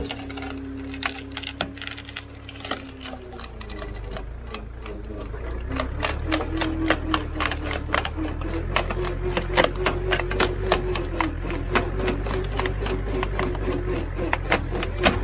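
Hydraulic log splitter running with a steady low hum and a whine that steps up in pitch and grows louder about six seconds in. Over it comes rapid cracking and snapping as a fibrous, root-covered tree stump is forced through the steel wedge and splits apart.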